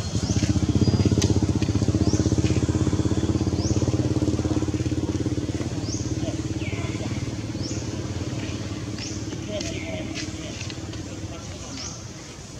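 An engine running steadily, slowly growing fainter toward the end. Over it, a short high rising chirp repeats about every second or so.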